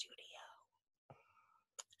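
A woman's whisper trailing off in the first half second, then near silence with a couple of faint clicks near the end.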